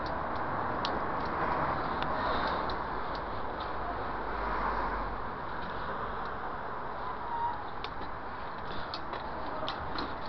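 Bicycle riding over a paving-stone sidewalk: steady rolling noise with wind on the microphone, and a few sharp light ticks and rattles from the bike.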